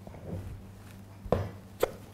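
A plastic paste tub handled and set down on a wooden worktop: faint shuffling, then two sharp knocks about half a second apart in the second half, over a low steady hum.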